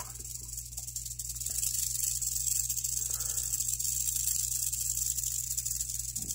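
Rattlesnake rattling its tail in a steady high buzz, growing louder about a second and a half in: a defensive warning from a snake guarding its ground.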